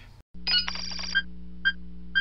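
Electronic beeping over a steady low hum: a held high tone, then short high beeps about every half second, all cutting off together.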